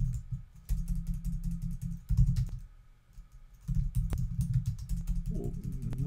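Computer keyboard typing in quick runs of keystrokes, the keys landing with dull low thuds, with a pause of about a second midway.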